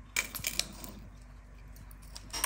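Hand-held metal potato ricer squeezed to press hot boiled potatoes into a glass bowl: a few light clicks in the first half second, then faint pressing.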